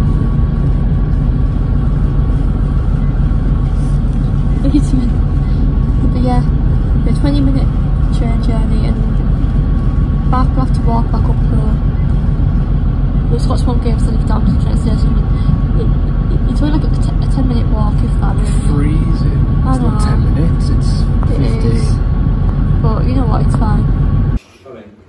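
Passenger train carriage in motion: a loud, steady low rumble of the running train, with a thin, steady high whine over it.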